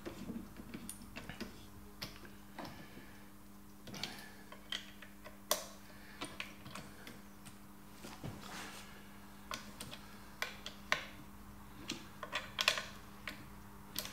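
Scattered small metallic clicks and ticks of a rifle scope mount being seated and its claws wound in by hand, over a faint, steady low hum.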